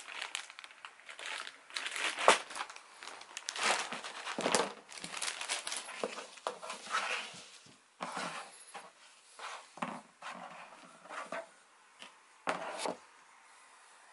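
A clear plastic bag crinkling as foam helmet liner pads are handled and taken out of it, in dense irregular rustles. In the second half there are only scattered, quieter handling sounds as the pads are set down on a table.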